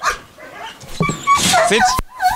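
German Shepherd giving a short high-pitched whine about a second in, excited at being offered a toy, followed by a man's spoken command.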